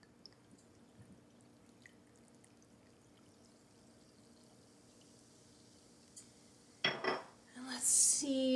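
Club soda poured from a small glass bottle into a glass of ice: a faint fizzing hiss with a few light ice clicks. Near the end comes a brief louder sound, then a voice.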